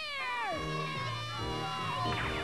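A cartoon voice gives a long meow-like cry that falls in pitch, then cartoon music with held chords over a bass line.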